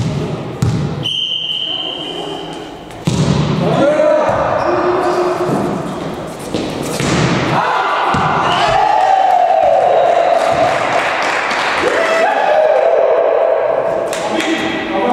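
Volleyball rally in a gym: the ball smacked by hands and thudding on the floor, with players shouting and calling. Long shouts come in the second half, as the point is won.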